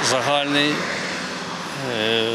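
A man's voice speaking briefly, then about a second of steady outdoor background noise as he pauses mid-sentence.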